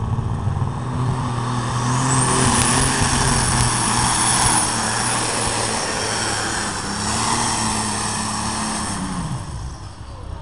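Pulling tractor's engine running hard as it drags a weight-transfer sled down the track, with a high whine that rises about two seconds in and holds. The engine note falls and quietens near the end.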